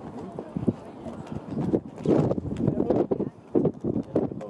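People talking near the microphone in a foreign language, with short irregular knocks mixed in.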